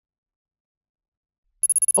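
Silence, then near the end a short, fast-trilling bell-like chime: a sound effect announcing the next word card.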